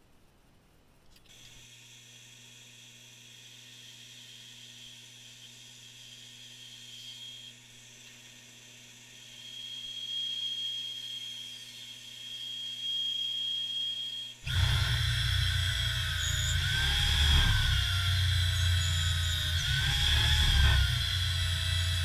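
A bandsaw starts running about a second in with a steady hum and high whine, getting louder as it cuts a hardwood strip. About two-thirds of the way through it gives way to a cordless drill boring into wood, its motor pitch rising and falling twice over a heavy rumble.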